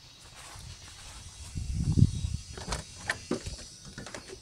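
Footsteps and camera handling while walking, with a low rumble swelling about halfway through, then a few sharp clicks and knocks near the end as a door knob is grasped and the door opened.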